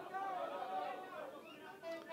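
Faint background chatter of voices, fading lower toward the end.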